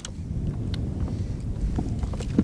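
Wind buffeting the microphone, a steady low rumble, with a few faint clicks.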